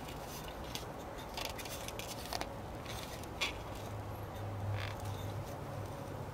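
Faint handling noise: light clicks and rubbing as a plastic distributor cap is turned over in the hands, with one slightly louder tick about halfway through. A faint low hum comes in for a second or so near the end.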